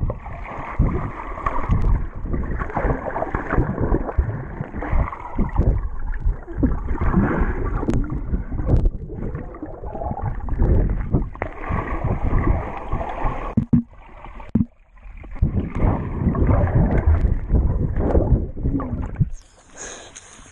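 Swimming-pool water heard through a submerged camera: muffled churning and knocking with irregular surges as swimmers move. Near the end the camera breaks the surface, and a higher hiss of open air and splashing suddenly comes in.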